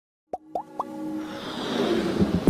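Logo-intro sound effects: three quick pops that rise in pitch within the first second, then music that swells and builds in loudness.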